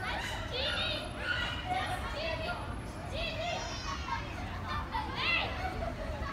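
A young child's high-pitched babble and short vocal calls, with a rising call near the end, over a steady low rumble.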